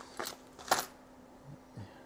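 A few light metallic clinks as small soldering iron tips are handled and picked out of a set, the loudest just under a second in, over a faint steady hum.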